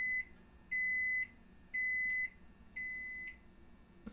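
Kenmore microwave oven beeping: a run of evenly spaced, single-pitch electronic beeps, each about half a second long, about one a second. Four fall here, the first already sounding as it begins and the last a little quieter.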